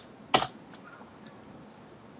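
A single sharp click of a computer keyboard key about a third of a second in, the Enter key sending a typed terminal command, followed by low room tone.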